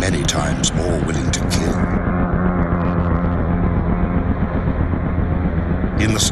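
Giant hornets' wings buzzing in flight, a low steady drone, with a run of sharp clicks in the first two seconds.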